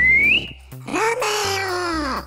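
A high whistle, one tone dipping and rising, that ends about half a second in. It is followed by a long, drawn-out high-pitched voice calling out, falling in pitch at the end, over soft background music.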